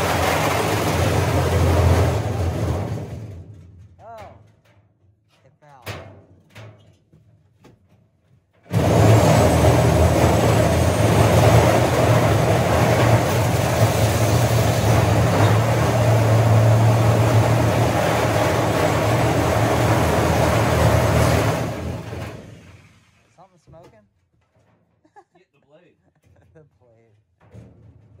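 Reciprocating saw cutting through the sheet-metal cabinet of an old chest freezer. The first cut stops about three seconds in and is followed by a few seconds of quiet with a few faint knocks. Then a second long, steady cut starts abruptly and runs for about thirteen seconds before winding down.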